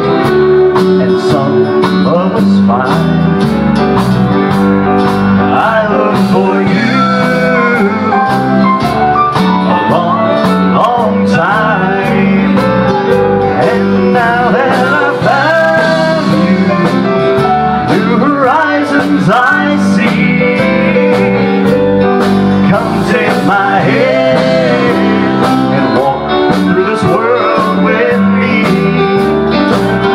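A live country band plays a slow song with guitar and a man singing lead.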